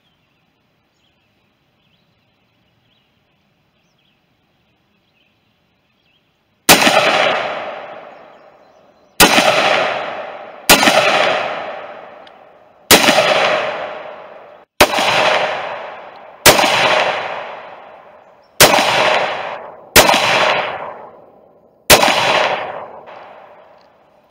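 AR-15 rifle fired nine times in slow, aimed semi-automatic shots, one every one and a half to two and a half seconds, starting a few seconds in. Each shot is a sharp crack with a long echo dying away over a couple of seconds.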